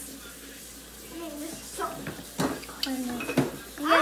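A spoon stirring liquid jello in a plastic mixing bowl, with a couple of sharp clicks of the spoon against the bowl, one about halfway through and one near the end.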